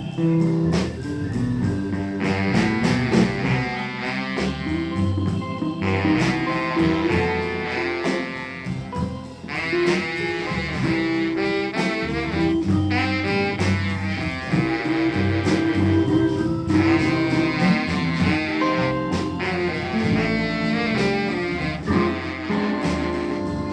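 Live blues-jazz band playing an instrumental passage. A saxophone plays the lead in phrases of a few seconds each, over upright bass, drums and electric guitar.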